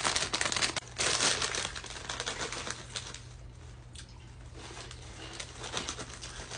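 Plastic snack bag of Hot Cheetos crinkling as it is handled, loudest over the first two seconds, then softer crackling rustles.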